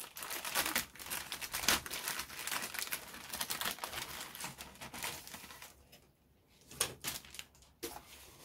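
Thin clear polythene bag crinkling and rustling as hands work a plastic model-kit sprue out of it. This gives way to a short quiet spell and a few light clicks near the end.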